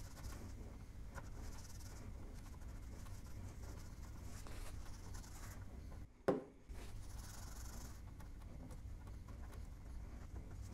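Cloth rubbing and scrubbing on a CD player's display window, wiping off sticker residue with alcohol, over a low steady hum. A single sharp click comes a little past halfway.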